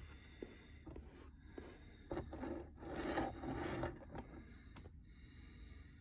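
Faint scraping and rubbing in a small room, in a few short stretches between about two and four seconds in.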